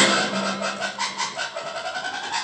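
Audience hand-clapping in a concert hall, many quick scattered claps, as the song's backing music cuts off at the start.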